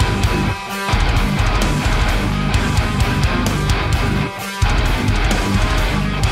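Full heavy metal mix playing back: distorted electric guitars and bass over a sampled GetGood Drums Invasion kit, the drums run through parallel bus compression. The music breaks off briefly twice, about half a second in and again about four seconds in.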